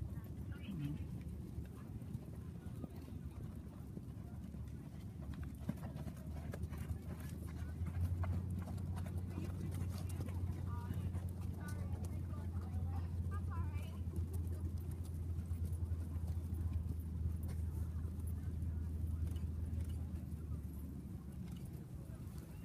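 Hoofbeats of a ridden horse on sand arena footing, with faint voices in the background. A steady low hum grows louder about eight seconds in and fades near the end.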